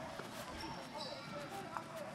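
A basketball game broadcast playing faintly on a television: indistinct commentary with faint court sounds.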